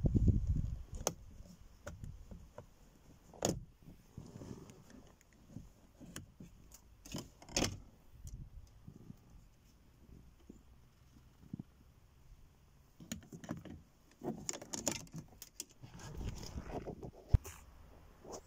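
Plastic interior door trim on a 2008 Nissan Qashqai being levered off with a plastic trim tool: scattered clicks, creaks and rattles of plastic clips releasing as the door-handle surround comes away, with a sharp snap near the end. A low rumble of handling noise is heard at the start.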